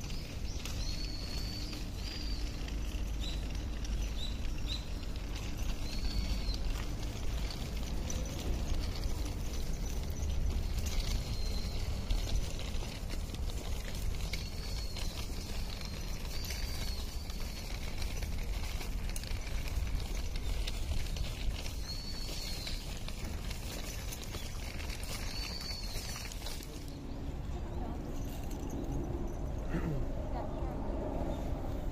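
Footsteps crunching steadily on a gravel and sand courtyard while walking, over a low wind rumble on the microphone. Short high chirps come through now and then.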